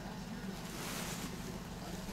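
A steady low hum with a brief rustle about a second in, as the phone camera is moved over a fabric-covered puppy pad.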